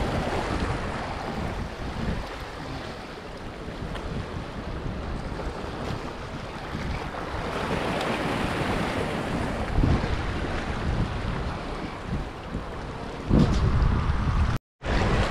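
Small waves washing and splashing against shoreline rocks, with wind buffeting the microphone. The wash swells in the middle, and two louder wind gusts hit near the end.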